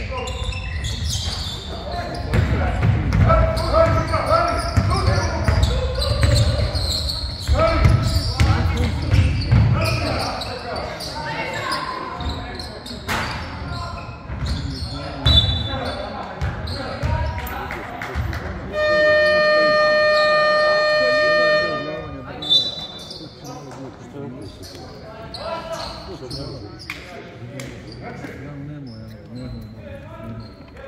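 Basketball game sounds in a gym hall: the ball bouncing on the hardwood floor and players' and coaches' voices. About two-thirds of the way through, the scoreboard buzzer gives one long steady tone lasting about three and a half seconds.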